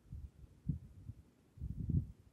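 Faint low thuds and rumbles from a handheld phone camera being moved and handled, a few irregular knocks with the strongest cluster near the end.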